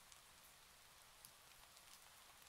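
Near silence: faint room hiss with a few barely audible ticks.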